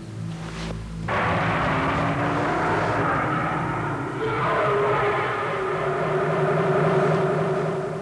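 Background music: sustained held chords that swell up about a second in and change to a new chord about halfway through.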